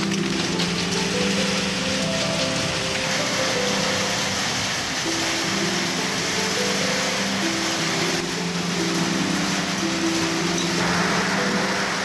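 Steady rain falling, an even hiss, under background music of slow, held low notes.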